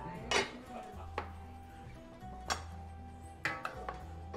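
Chef's knife slicing through a large tomato, each stroke ending in a sharp tap on the cutting board, a few strokes about a second apart.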